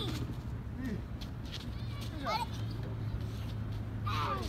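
A child's short falling-pitch call about two seconds in, over a steady low hum that grows a little stronger just after it.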